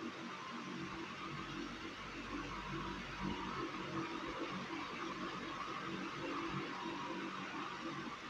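Steady background hiss of room noise, with faint, indistinct low sounds underneath.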